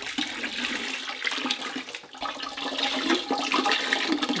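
Liquid pottery glaze poured from a pitcher over a bowl, splashing and trickling off the rim into a bucket of glaze.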